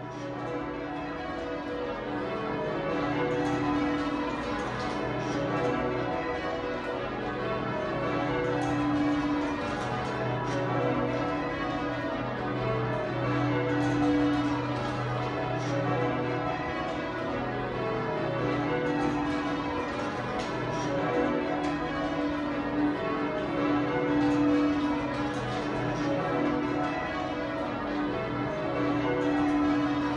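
The ring of twelve Taylor church bells at St Mary Redcliffe, tenor about 50 cwt in B, rung full-circle by hand in Devon-style call-changes: a continuous, even stream of bell strikes that overlap and ring on. It grows a little louder over the first few seconds.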